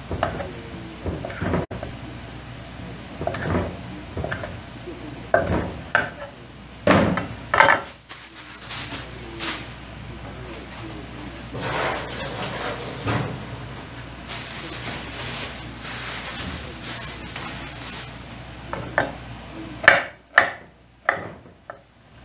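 Chef's knife chopping on a wooden cutting board: irregular single knocks of the blade hitting the board, a long stretch of rustling noise in the middle, then a quick run of chops near the end.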